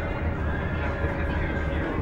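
Steady low rumble inside a moving coach, heard from a passenger seat, with faint voices over it.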